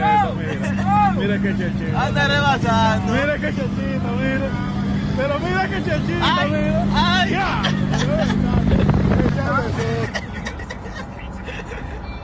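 A vehicle engine runs with a steady drone while voices exclaim excitedly over it. The drone drops away about ten seconds in.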